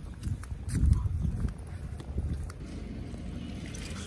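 A person and a golden retriever walking on a paved sidewalk: footsteps with light clicks and clinks from the dog's chain collar and leash, over a low rumble on the microphone that is loudest about a second in.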